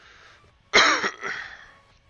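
A man clears his throat close to the microphone, a sudden loud sound about three quarters of a second in, in two parts, the second weaker.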